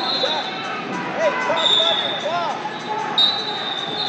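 Referee whistles blowing three long blasts in a busy wrestling hall: one at the start, one about halfway and one near the end. Underneath is a din of voices, with short squeaks from wrestling shoes on the mats.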